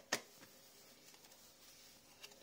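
Quiet room tone with a single short click just after the start; the automatic soap dispenser makes no sound, as it fails to switch on.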